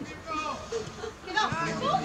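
Young footballers' high-pitched shouts and calls to each other during play, several voices overlapping and growing louder in the second half.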